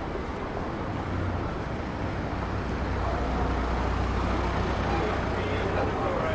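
A van's engine running at low speed close by: a steady low hum that grows louder about a second in. Passers-by are talking over general street noise.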